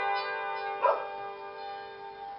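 Hammered dulcimer strings ringing on and slowly dying away after the last notes struck, several pitches sustaining together. A short, louder sound breaks in a little under a second in.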